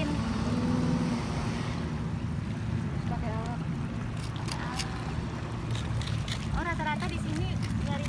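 A steady low engine drone, with faint voices speaking twice and a few light clicks over it.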